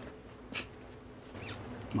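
Low steady background hum, with a short faint hiss about half a second in.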